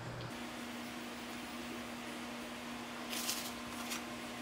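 Quiet room tone with a steady low electrical hum, and a brief soft rustle about three seconds in.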